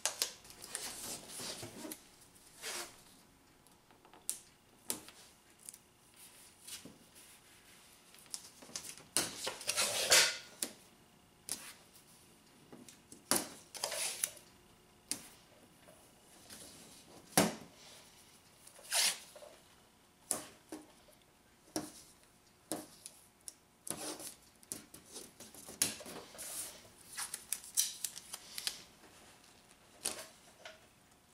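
Blue painter's tape being pulled off the roll, torn and pressed down onto a car's bodywork, heard as scattered short rips and taps with one longer unrolling pull of about a second.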